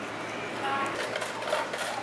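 Restaurant dining-room ambience: indistinct background voices of diners, with scattered light clicks.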